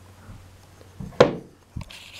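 A handheld timer box set down on a desk top: a dull thud, then a sharp knock about a second in, and a lighter knock near the end.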